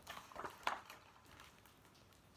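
Pages of a large picture book being turned by hand: three quick paper swishes within the first second.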